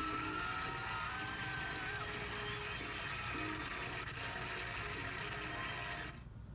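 Studio audience applause with the show's bumper music, played through a TV speaker into a room. It cuts off suddenly at the end as the taped recording stops.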